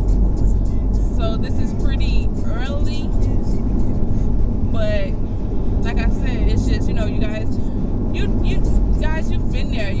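Steady low rumble of a car being driven, heard from inside the cabin, under a woman's voice.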